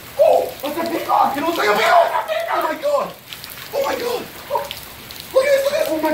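Rain falling on the water of a swimming pool, a steady hiss, with excited voices over it.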